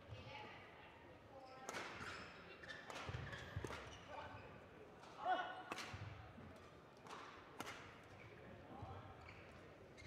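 Badminton rackets striking a shuttlecock during a rally, a series of sharp hits a second or two apart, in a large sports hall.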